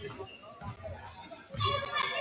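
Mixed chatter and children's voices in a gymnasium, with a few dull thumps about a second apart. The voices get louder near the end.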